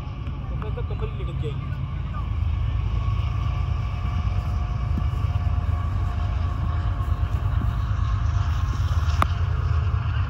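Low, gusting wind rumble on the microphone, growing louder about two and a half seconds in, with a single sharp click near the end.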